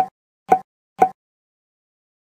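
Editing pop sound effect, three short identical pops about half a second apart in the first second, each marking a text caption popping onto the screen.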